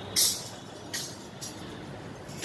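Chimta, the long steel tongs fitted with small metal jingles, clashing: a loud bright jingle just after the start, then two fainter ones about a second in.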